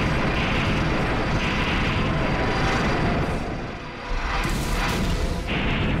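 Film sound effects of a mid-air explosion, an aircraft blown apart in the sky, as a continuous heavy rumble under a music score; the rumble eases about four seconds in and then swells again.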